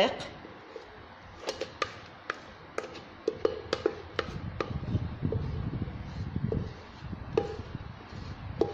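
Stainless-steel cake mould being handled, giving a string of sharp metallic taps and clinks with a short ring, and a low rumbling handling noise through the middle.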